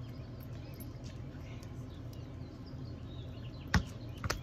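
A steady low outdoor hum, then a single sharp knock near the end as the kicked basketball or its beer can lands on the pavement.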